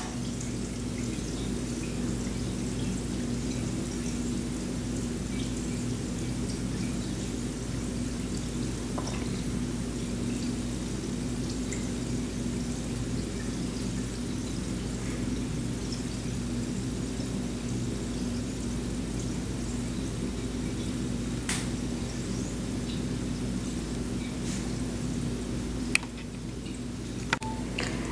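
Lush Rose Bombshell bath bomb dissolving in a tub of bath water: a steady bubbling that sounds kind of like a fountain, with a couple of faint clicks in the second half.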